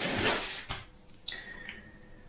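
Airbrush blowing compressed air: a hiss that cuts off sharply less than a second in, then a shorter, fainter burst of air with a thin whistle.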